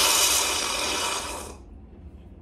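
A long, loud slurp from a glass mug: a steady airy hiss that stops about one and a half seconds in.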